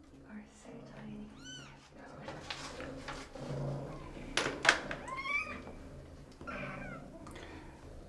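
A two-week-old kitten mewing a few times in short, high-pitched cries that rise and fall while it is handled. A couple of sharp clicks come about halfway through.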